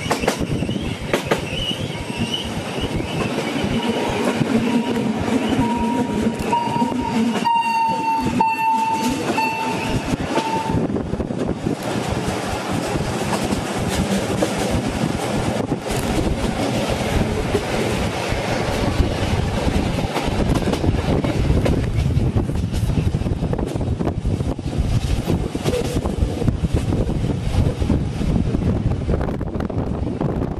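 Bernina Railway train running, heard from inside a carriage: steady rumble and clatter of wheels on the track. From about five to ten seconds in, a drawn-out high squeal that wavers and rises slightly, typical of steel wheels screeching against the rail on a tight curve.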